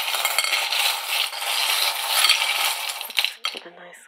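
A handful of small metal charms being shaken together, a dense clinking jingle that stops about three seconds in.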